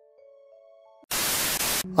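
Faint mallet-percussion background music that stops about a second in, followed by a loud burst of static hiss lasting under a second that cuts off abruptly.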